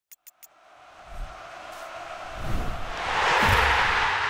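Logo intro sound effect: three quick clicks, then a rising whoosh with deep booms that builds to a peak near the end.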